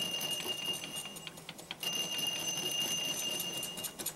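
Power hammer beating the steel head of an oil drum being sunk into a steel pan: fast, even blows with a steady high ringing tone over them. It runs for about a second, pauses briefly, then runs again until just before the end.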